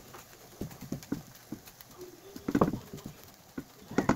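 Silicone spatula tapping and scraping against a nonstick frying pan while okonomiyaki batter is pushed into shape, with scattered light knocks and a denser cluster about two and a half seconds in.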